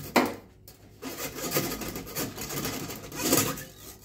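Coiled steel drain-snake cable scraping against the metal sink drain as it is drawn out by hand: a continuous rasping with fine rapid ticks from about a second in.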